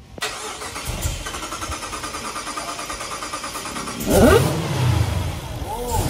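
Jeep Grand Cherokee Trackhawk's supercharged 6.2-litre Hemi V8, fitted with a smaller supercharger pulley and an E85 tune, cranking on the starter with an even pulsing for about four seconds, then catching and flaring up with a rising supercharger whine and a deep rumble.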